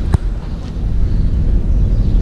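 Wind buffeting the camera microphone outdoors: a steady low rumble, with a single sharp click just after the start.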